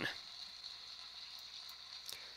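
An auditorium audience applauding, faint and steady.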